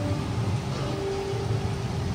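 Steady outdoor ambience: a low rumble under an even hiss, with a few faint held music notes over it.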